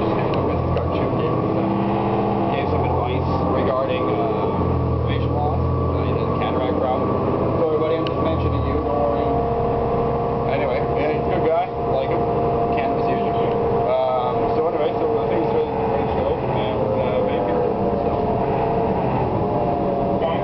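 City bus running, heard from inside the cabin: a loud, steady engine and road drone whose low engine note drops away about eight seconds in, leaving a steadier whine. A man's voice is half-buried under it.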